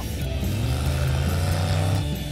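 V8 dune buggy on paddle tires driving with its engine running steadily, with background music mixed in.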